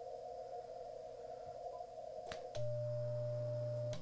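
Icom IC-7300 in CW mode: receiver hiss through its narrow filter, then two clicks about two and a half seconds in as it switches to transmit. A steady CW sidetone beep and a low hum follow while the radio sends a carrier for the SWR reading.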